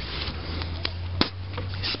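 Microfiber cloth rubbing and buffing a plastic headlight lens by hand, a soft scrubbing noise over a steady low hum, with two sharp clicks about a second in.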